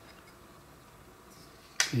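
Quiet room, then a single sharp click near the end, just as a voice starts.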